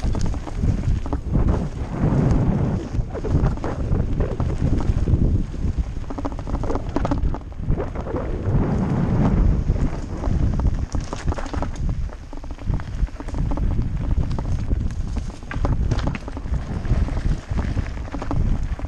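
Mountain bike riding down a rough dirt and stony forest trail: a continuous rattle and knocking of the bike over the bumps, with tyres on loose ground and wind buffeting the microphone.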